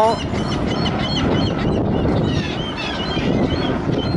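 Birds calling: many short, repeated calls, several a second at times, over a steady low background rumble.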